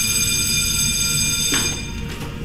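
A steady, high-pitched electronic tone, several notes held together, that cuts off suddenly about a second and a half in.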